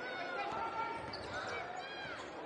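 A basketball being dribbled on a hardwood court, with sneakers squeaking in short chirps as players move, over the murmur of an arena crowd.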